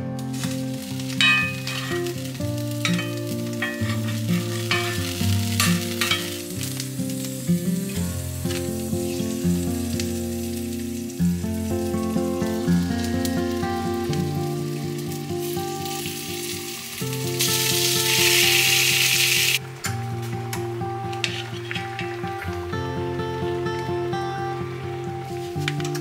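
Raw chicken breasts sizzling as they fry in hot fat in a cast-iron skillet, with a much louder stretch of hissing sizzle about three-quarters of the way through that cuts off suddenly. Background music plays over the frying.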